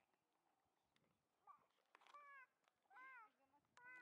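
Three faint, short, high-pitched animal calls, each rising and falling in pitch, coming about a second apart in the second half.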